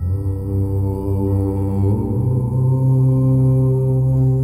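A low male voice chanting one long 'Om', the open vowel shifting into a steady hummed 'mm' about two seconds in, over a soft sustained musical drone.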